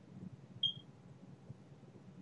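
Faint low background hum and room noise in a pause between words, with one short high-pitched chirp just over half a second in.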